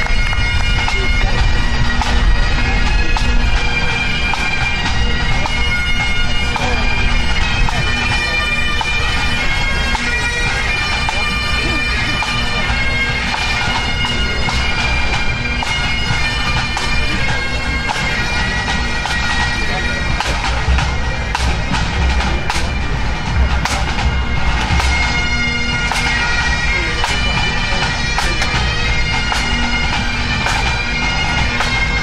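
Pipe band playing: a group of Great Highland bagpipes sounding a tune over steady drones, with snare, tenor and bass drums beating along.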